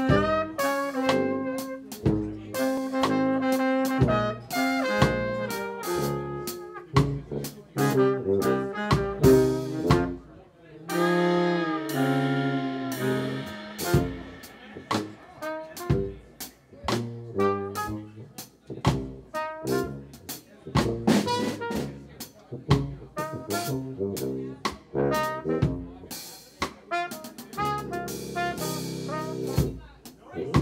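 Live jazz quartet of trumpet, tuba, baritone saxophone and drum kit playing an up-tempo tune: horn lines and a tuba bass line over busy snare and cymbal work.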